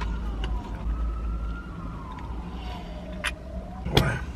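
A distant siren wailing, its single tone slowly rising and falling, over a steady low rumble. A short click comes near the end, then a sharp knock, the loudest sound.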